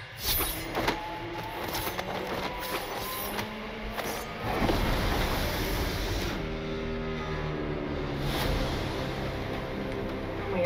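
Sci-fi series trailer soundtrack: dramatic sound effects with several sharp hits and a noisy swell in the first half, then held musical chords from about six and a half seconds in, building to the title card.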